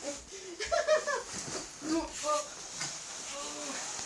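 People giggling and laughing in short bursts.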